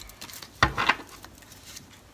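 Tarot cards being handled as one is drawn from the deck, with a few light clicks and one soft tap a little over half a second in.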